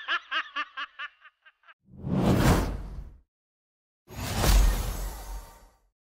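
A child's short laugh, a quick run of pitched bursts about six a second that fades out in the first two seconds. Then come two whoosh sound effects, each about a second long.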